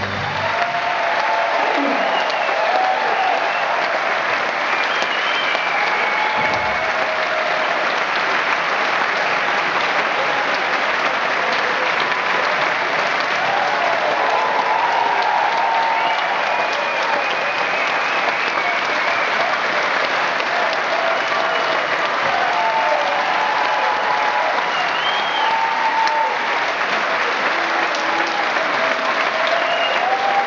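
Theatre audience applauding steadily, with voices cheering over the clapping.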